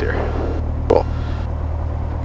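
Piper Warrior's four-cylinder Lycoming engine idling at about 1000 RPM, heard as a steady low drone inside the cockpit. A single sharp click comes about a second in.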